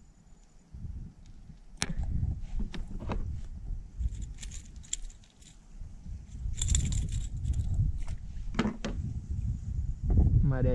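Handling noise from unhooking a just-caught small peacock bass in a plastic kayak: scattered clicks and knocks with a metallic jangling rattle, typical of the stick lure's treble hooks, over low rumbling handling noise. A sharp click comes about two seconds in, and clusters of rattling come around the middle and about two-thirds of the way through.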